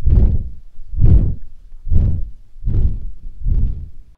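AI-generated sound effect of a dragon flying fast through the sky: five deep whooshing wing flaps, a little under a second apart, like wings flapping in the wind.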